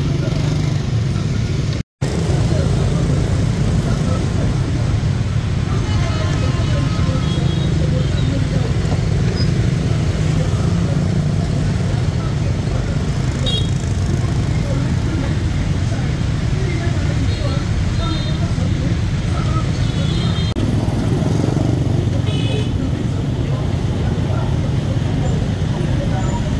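Heavy rush-hour street traffic, mostly motor scooters and cars, a steady engine and tyre rumble with short horn toots now and then. The sound drops out for a moment about two seconds in.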